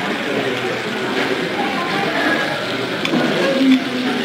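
Indistinct chatter of several voices in a busy dining room, none of it clear speech, with a short, louder sound near the end.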